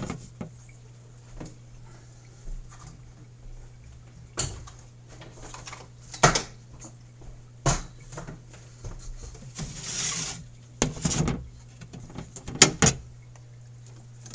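Scattered knocks and clicks of hands and equipment being handled around the aquarium top, with a short rustle about ten seconds in, over a steady low hum.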